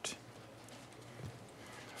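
Faint room tone: a steady low hiss.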